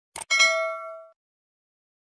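Subscribe-button animation sound effect: a short mouse click, then a notification-bell ding that rings out for under a second.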